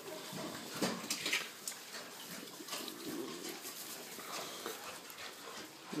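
Baby piglets grunting softly and moving about in straw bedding, with a few short sharp rustles about a second in.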